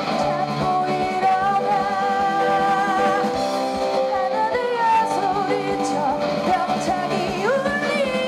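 Pop-rock song with a sung vocal melody over a full band with drum kit, keeping a steady beat.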